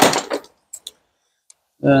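A short scrape, then a few faint light clicks of metal parts being handled.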